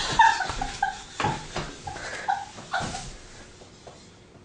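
A dog whimpering: a run of short, high-pitched whines in quick succession, with a few knocks among them, dying away near the end.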